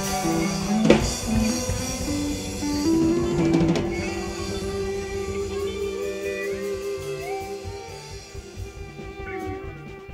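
Live band music winding down: a drum and cymbal hit about a second in and more around three and a half seconds, then held notes from the string band ring out and fade away.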